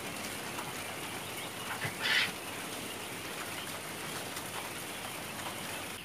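Steady hiss in a quail house with one short, high call from a quail about two seconds in.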